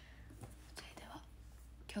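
A young woman whispering faintly, breathy and soft, before she starts speaking aloud at the very end.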